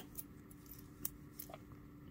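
A few faint, scattered metal clicks from a stainless steel watch and its link bracelet being handled, over a low steady hum.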